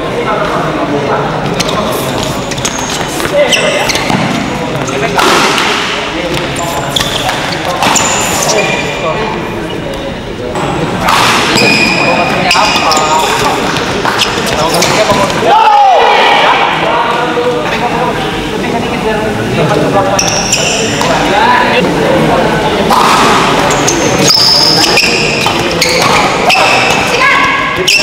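Badminton doubles rallies in a reverberant sports hall: rackets strike the shuttlecock again and again, with sharp, hard smash hits. Voices of players and onlookers run underneath.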